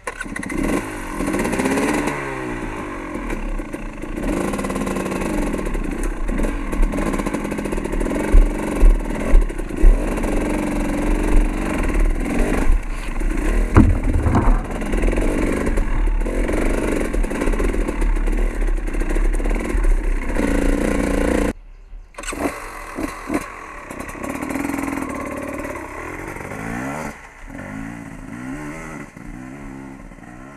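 Dirt bike engine revving up and down as the bike pulls away and rides a rough trail, with a few sharp knocks about a third of the way in. About two-thirds of the way in the engine sound drops off suddenly and then runs quieter, rising and falling again near the end.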